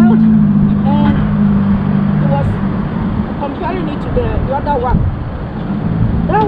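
A motor vehicle's engine running with a steady low hum that fades out about two and a half seconds in, with scattered talking over it.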